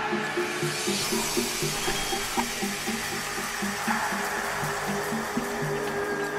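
Electronic ambient music played live on hardware synthesizers: a repeating sequence of short low synth notes, with a wash of noise that swells up over the first second and holds.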